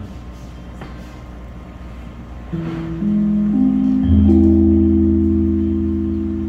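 Keyboard opening a slow song. After a short stretch of room quiet, single notes come in one after another about half a second apart and build up a held chord, with a low bass note joining about four seconds in, all sustained and slowly fading.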